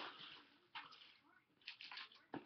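Near silence, with a few faint, short rustles about a second in and near the end.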